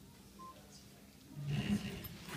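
Quiet room tone with one short electronic beep about half a second in, then a man's voice starting near the end.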